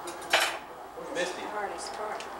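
Kitchen dishes and utensils clattering: one sharp, loud clink just after the start, then lighter clinks through the second half.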